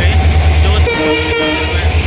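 A train horn sounds one steady blast lasting about a second, starting about a second in, over a steady low rumble.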